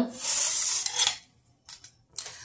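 Metal serving spoon scraping across the bottom of a metal baking pan for about a second, followed by a few faint clicks.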